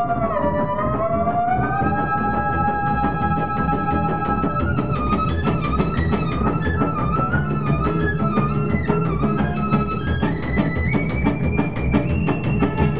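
Live string-band music: a violin carrying the melody, with long sliding held notes for the first few seconds and then quicker phrases, over chorded rhythm guitar and plucked upright string bass.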